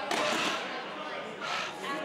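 A man's heavy exhale at the end of a set on a plate-loaded shoulder press machine, loudest in the first half-second, then quiet breathing.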